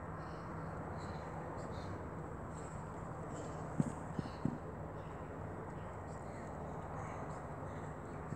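Steady outdoor background noise with a faint low hum, broken by three quick soft knocks close together about four seconds in.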